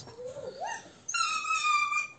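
A dog whining while play-fighting: a short, faint rising whine, then a high, steady whine held for about a second.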